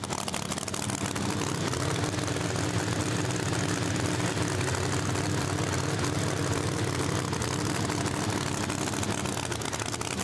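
Engines of two supercharged drag cars running, a steady drone that holds at one pitch without rising or cutting off.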